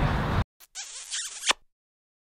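A short edited-in sound effect: about a second of high, scratchy noise that ends in a sharp click, set between stretches of dead silence.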